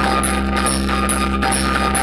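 Electronic DJ music played at high volume through a tall stack of loudspeaker cabinets, with steady deep bass under a fast repeating high beat about four times a second.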